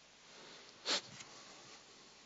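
A single short sniff about a second in, otherwise quiet room tone.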